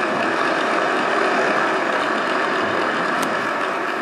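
Steady, even hiss of noise from a DVD concert recording as its playback starts, cutting in abruptly just before the start and holding level throughout.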